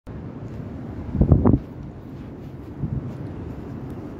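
Wind buffeting the microphone as a steady low rumble, with a louder burst about a second in and a smaller one near three seconds.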